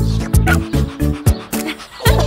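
Upbeat children's song backing music with a steady beat, with a cartoon puppy giving short barks over it.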